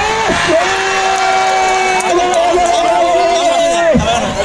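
A football commentator's long drawn-out 'goal' shout, a man's voice holding one steady note for about three seconds before breaking off, as a goal is scored.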